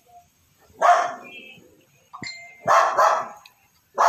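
A dog barking: two loud barks, the first about a second in and the second about three seconds in.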